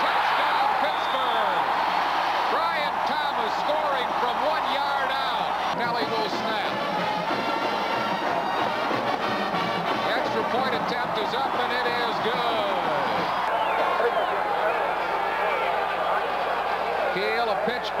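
Football stadium crowd noise, many voices at once, with a brass band playing.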